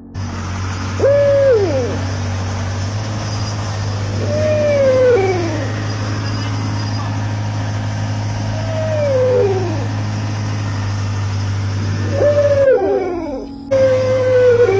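An animal call that falls in pitch, about a second long, repeated four times roughly every four seconds over a steady low hum.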